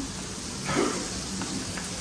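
Steady background hiss of a buffet dining room, with one short sound about three-quarters of a second in.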